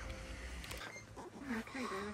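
Faint, distant voices over low background noise, with no clear sound of its own.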